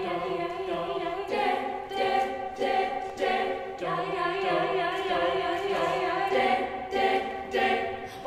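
An a cappella vocal group singing held chords in close harmony, re-sung in short rhythmic pulses, with no instruments.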